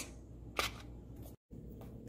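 Quiet room tone with a steady low hum, broken by a single short click about half a second in. Shortly after, the sound drops out completely for a moment.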